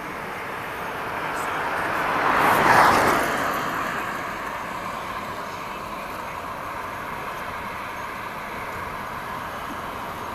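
A car passing close by on the street. Its tyre and engine noise builds to a peak about three seconds in, then fades into a steady hum of traffic.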